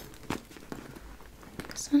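Soft rustling and light taps of a puffy pleated leather handbag being pressed and its flap worked closed, with a few small clicks. The half-empty bag is hard to close.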